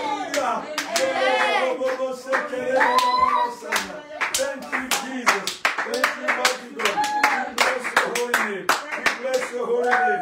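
A few people clapping their hands in worship, about three to four claps a second, with voices calling out over the clapping now and then.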